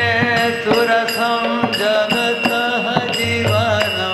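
A man singing a Sanskrit devotional hymn in a slow chanting melody, with percussion striking a steady beat and a sustained accompanying tone beneath the voice.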